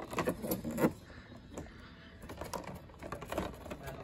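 Carded action figures in plastic blister packs clicking and clattering against each other and the peg hooks as they are flipped through by hand, a dense run of clicks in the first second, then scattered ones.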